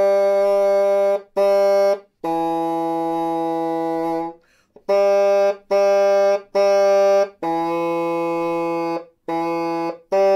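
Tenoroon, a small bassoon, played slowly as a single melody line: about eight separately tongued notes with short breaks between them, two of them held for about two seconds.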